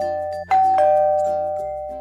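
Two-tone doorbell chime ringing ding-dong, a high note followed by a lower one, starting about half a second in while the previous chime is still fading out. It signals a visitor at the door.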